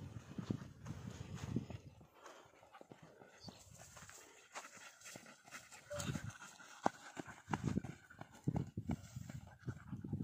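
Footfalls of a person and a husky running on a grassy slope, uneven thuds and scuffs, with irregular low rumbling from movement and wind at the microphone.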